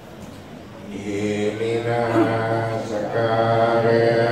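A group of voices chanting a Buddhist recitation in unison, beginning about a second in and held on fairly level pitches.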